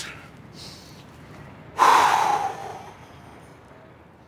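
A man takes a faint breath in, then lets out one loud, sharp breath about two seconds in that fades over about a second.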